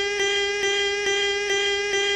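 A man's shouted, drawn-out vowel cut into a very short loop that repeats over and over: one steady pitch with a click at each seam, a little more than twice a second.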